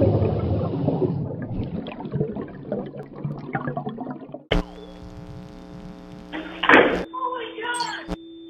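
Logo sting sound effect: a rush of splashing, bubbling water that fades over about four seconds, then a sudden steady electronic chord with a short noisy burst near the end.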